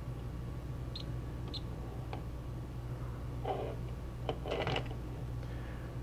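A steady low hum, with a few faint clicks and soft scrapes of a metal multimeter probe tip being moved over the solder pads of a circuit board.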